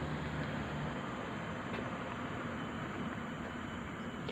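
Steady outdoor background noise: an even hiss with no distinct events, with a faint low hum that fades out about a second in.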